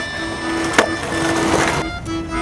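Skateboard on concrete: wheels rolling, with one sharp clack of the board about a second in. The sound cuts off suddenly near the end.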